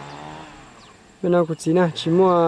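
A short lull with faint background noise, then, a little over a second in, a voice sounding a quick run of short, pitched, repeated syllables.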